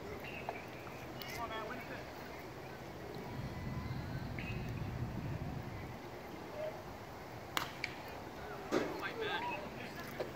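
Outdoor ballfield background with faint distant voices, and a single sharp pop about seven and a half seconds in as a pitch reaches home plate.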